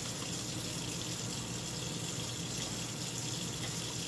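Steady hiss of chicken broth simmering in a stainless-steel Instant Pot insert on its simmer setting, with a faint low hum underneath.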